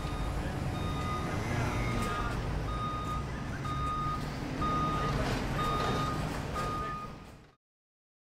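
Electronic beeps, one about every second, each about half a second long, over a steady low rumble. It all cuts off suddenly near the end.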